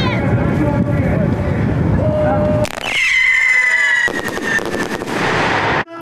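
Outdoor race ambience with rumbling wind on the microphone and spectators' voices, then a start signal: a long, high horn blast that falls slightly in pitch over about two seconds, followed by a short rush of noise.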